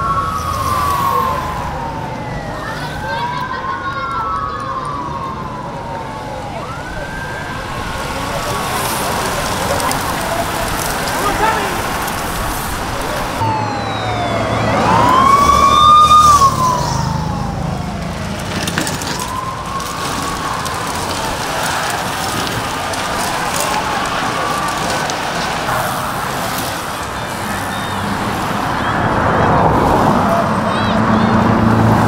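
Siren wailing in repeated rising and falling sweeps every few seconds, loudest about halfway through, over steady street noise.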